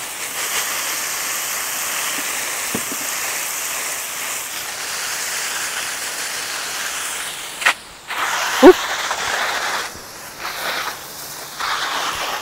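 Water hissing steadily from a garden hose spray nozzle onto vegetable beds. About eight seconds in the hiss breaks off, then returns weaker and uneven.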